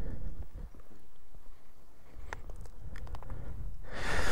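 Footsteps on an asphalt lane, with a few sharp steps in the second half, over a low uneven rumble.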